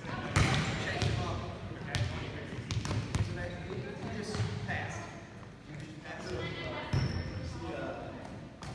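Volleyballs being hit and bouncing on a hardwood gym floor in a large gym: a run of sharp slaps and thuds, the loudest about half a second in and again near the end, with voices in the background.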